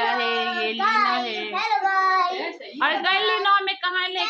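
A young boy singing with held, wavering notes, breaking off briefly in the middle before going on.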